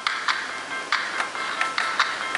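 A music track played through the small built-in speaker of an Olympus WS-853 digital voice recorder: short, sharp notes in a quick rhythm, thin with almost no bass.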